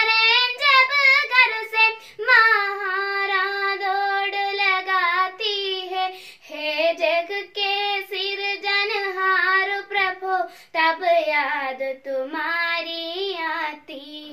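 A girl singing a Hindi poem unaccompanied, in phrases of long held notes that waver slightly in pitch, with short breaks between phrases.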